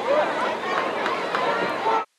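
Indistinct spectator voices talking over a steady crowd noise; the sound cuts off suddenly at the very end as the audio drops out.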